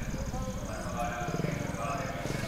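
Motorcycle engine running at low speed as the bike approaches, with a fast, even, high-pitched chirping of night insects.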